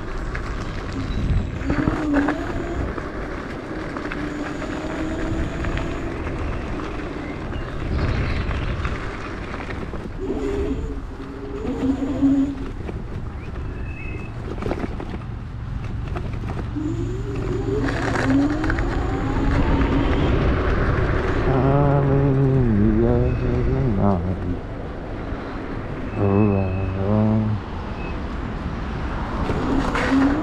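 Riding a Dualtron Thunder electric scooter: wind buffeting the helmet-mounted microphone and tyre rumble over the path, with the motors' whine gliding up in pitch several times as it accelerates.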